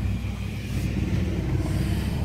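A vehicle driving on a back road, heard from inside the cab: a steady low engine and tyre rumble.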